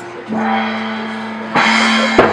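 Small live band playing a song: acoustic guitar, accordion, bass guitar and mallet percussion. A held note sounds first, then the whole band comes in loudly about one and a half seconds in.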